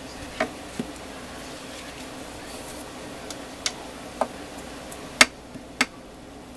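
A bone folder burnishing heavy cardstock flat, with a handful of sharp, irregular clicks as the tool taps and catches on the card and mat, the loudest about five seconds in. A steady low hum runs underneath.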